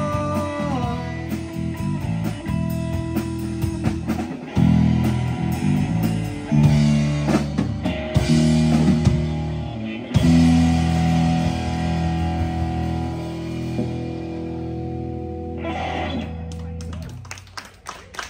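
A live rock band with electric guitar, electric bass and drum kit playing the instrumental close of a song, with heavy accented chords. A final chord is held and then dies away near the end.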